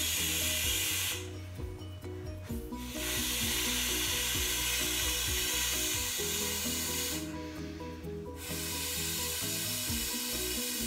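Air blown by mouth into the valve of an inflatable beach ball: a breathy hiss lasting a few seconds per breath, broken twice by short pauses for breath. Background music plays with a repeating pattern of low notes.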